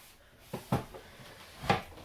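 A few short knocks and a louder thump near the end: a large boxed tarot deck being pulled out from storage below a wooden desk.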